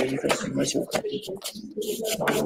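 Indistinct, muffled voices of people talking in the room, picked up at a distance by the conference microphone.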